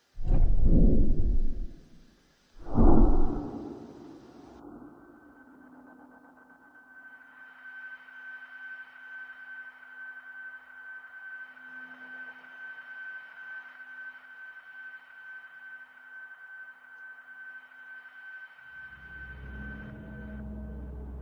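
Horror-film sound design: two loud, deep hits a couple of seconds apart, then a quiet, eerie sustained drone with a thin high steady tone over a low hum. A low rumble swells near the end.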